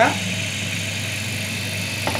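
Homemade electric motor-and-generator rig running with a steady, even hum.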